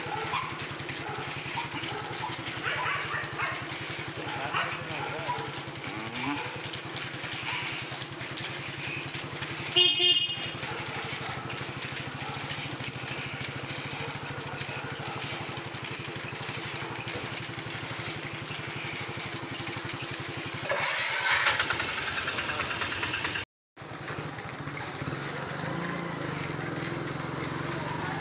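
A motorcycle engine running steadily, with a short horn toot about ten seconds in and a louder rush of street noise a little past twenty seconds.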